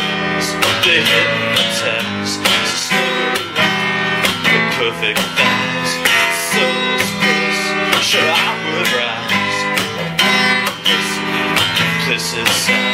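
Acoustic guitar strummed in a steady rhythm: an instrumental passage of an acoustic pop-rock song, with no singing.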